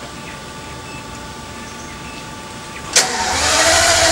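Pagani Zonda Cinque's Mercedes-AMG V12 being started. A steady faint whine runs for about three seconds, then the starter cuts in suddenly and the engine cranks and fires near the end.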